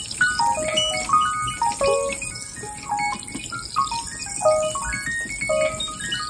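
Piano played fast and chaotically: a dense jumble of quick runs and clusters of notes tumbling up and down the keyboard.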